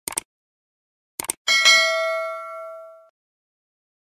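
Subscribe-button animation sound effects: a quick double click at the start, another double click about a second in, then a bell ding that rings out and fades over about a second and a half.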